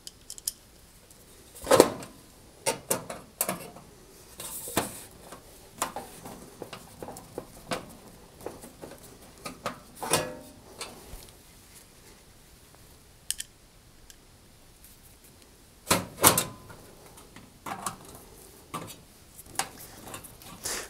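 A screwdriver driving screws into a sheet-metal access cover on the back of a cooker, with the panel handled against the cooker's metal frame: scattered metallic clicks, scrapes and knocks, the loudest about two seconds in and again about four seconds before the end.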